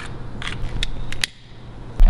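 A few short, sharp clicks from a hand-held tool, over a steady low hiss.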